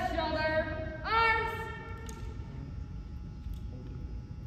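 A cadet calling the drill command "Left shoulder, arms" in two long, drawn-out syllables that ring through the gym, the second call rising at its start. A couple of faint clicks follow near the end as the drill rifle is brought to the shoulder.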